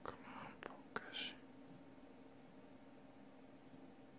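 A person's brief faint whisper with two small sharp clicks in the first second or so, then near silence with a faint steady hum.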